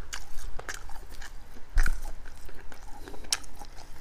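A man chewing a mouthful of food close to a clip-on microphone: irregular wet mouth clicks and smacks, with a louder click and low thump a little under two seconds in and another sharp click a little past three seconds.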